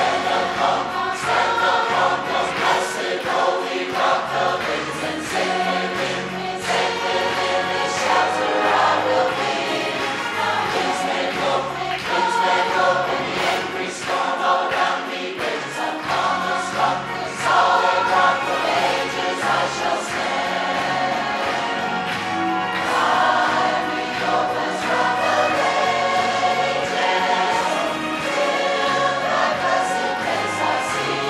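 Large mixed choir of men and women singing a worship song together, with sustained sung notes running continuously.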